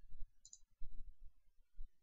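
A faint computer mouse click about half a second in, among several soft low thumps.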